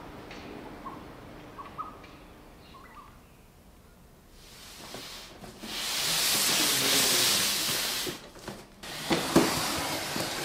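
A few faint short chirps, then a loud scraping hiss lasting about three seconds in the middle. Near the end come soft knocks of footsteps in slippers on a wooden floor.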